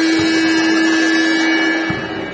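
Basketball arena game buzzer sounding one loud, steady electronic tone that cuts off suddenly near the end, signalling a break in play.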